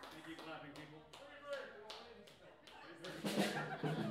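Voices talking over a band's drum kit being struck in scattered hits between songs, the hits growing louder about three seconds in.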